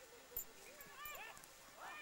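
Dry mustard stems rustling and crackling as they are pulled up by hand, with one sharp snap about half a second in. A few faint, high rising-and-falling calls follow, about a second in and again near the end.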